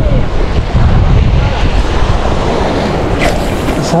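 Wind buffeting the camera microphone in a heavy low rumble, over the wash of sea waves breaking against a rocky shore.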